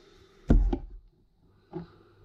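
A lamp being handled and moved: a sharp knock with a deep thud and a couple of quick clicks about half a second in, then a lighter knock near the end.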